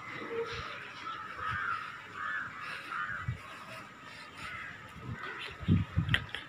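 A crow cawing, three short calls in a row about a second and a half in and fainter ones after, with a couple of low thuds near the end.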